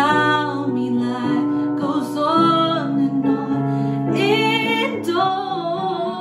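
A woman singing a slow R&B love ballad over a karaoke piano backing track, her voice gliding through long, bending notes.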